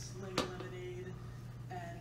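Faint background talking over a steady low hum, with one sharp tap about half a second in as a plastic ink bottle is set down on the table.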